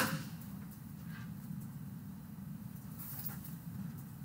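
Quiet room tone in a pause between spoken sentences: a steady low hum with a couple of faint, brief small noises.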